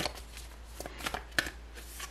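A deck of large oracle cards being shuffled and handled by hand: a handful of sharp, irregular card slaps and taps.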